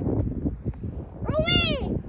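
A young child's single high, drawn-out call whose pitch rises and falls in an arch, like a meow, about a second and a half in. Low wind rumble lies over the microphone throughout.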